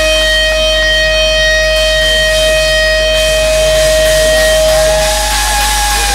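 Electric guitar holding one long sustained note with feedback through a stadium PA, cheering crowd underneath. About four seconds in, a second, higher note slides in and bends up and down as the first one stops.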